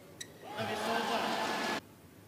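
A badminton racket strikes the shuttlecock once with a sharp crack. About half a second later a player gives a loud held shout over arena noise. The shout lasts just over a second and cuts off abruptly.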